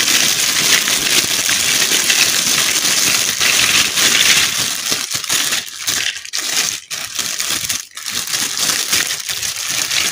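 Clear plastic bag crinkling loudly as hands handle and open it to empty out small plastic toy furniture pieces. The crinkling is continuous, with a few brief pauses in the second half.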